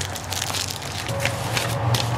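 Close crackling, rustling handling noise as a paper leaflet is unfolded and fabric brushes against the microphone. A low steady hum comes in about a second in.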